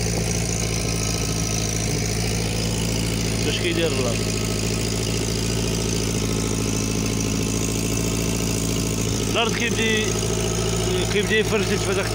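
An engine running steadily throughout, its even hum unchanged.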